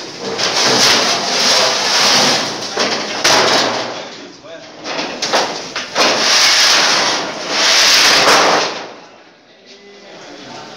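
Corrugated metal roofing sheets being handled and dropped onto a pile: loud rattling and scraping clatter of sheet metal in several long stretches, dying down near the end.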